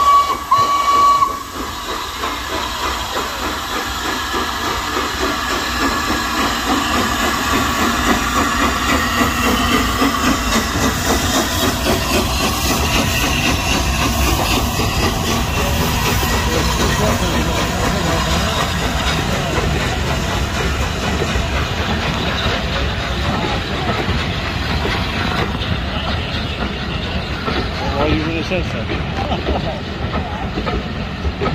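Steam locomotive 60103 Flying Scotsman, a three-cylinder LNER A3 Pacific, sounding one short whistle blast of just over a second. Its steam hiss and the rumble of the engine and coaches then build as it runs past close by, and the sound stays steady to the end.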